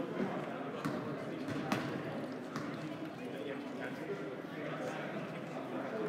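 Indoor gym ambience: indistinct chatter in a large echoing hall, with basketballs bouncing on the hardwood court during warm-ups, several sharp bounces standing out in the first half.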